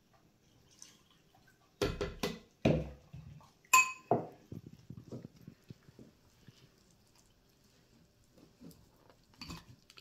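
Metal spoon stirring a thick cornstarch-and-water mix in a glass bowl. A few knocks come about two seconds in, then one ringing clink of the spoon against the glass, then a run of light scraping taps.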